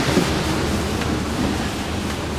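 Strong gale wind and rushing, breaking sea around a sailing yacht in heavy weather, a steady noise with wind buffeting the microphone.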